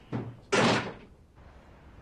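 A wooden door being shut firmly: a light knock, then one sharp bang about half a second in as it closes.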